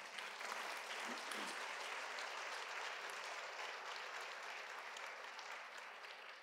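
Audience applauding, a steady patter of clapping that slowly dies down toward the end.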